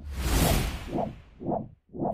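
Swoosh transition effect: a burst of hiss over a low rumble that starts suddenly and fades over about a second, followed by two softer swells.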